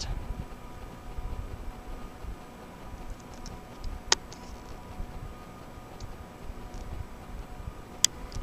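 Handheld camera handling noise: a low, uneven rumble with a faint steady hum, and one sharp click about halfway through.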